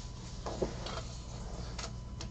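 A few faint, sharp clicks and taps over a steady low electrical hum.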